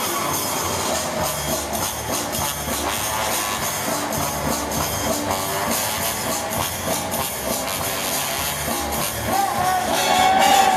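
Quickstep ballroom dance music with a brisk, steady beat, played over loudspeakers in a large hall.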